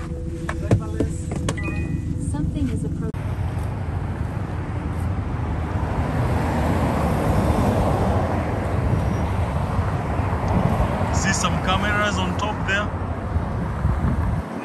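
Quiet car cabin with a few sharp clicks. About three seconds in, this gives way to the steady noise of a city street with passing traffic, and faint voices near the end.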